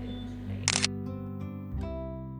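Soft acoustic guitar music with a single camera shutter click about two-thirds of a second in.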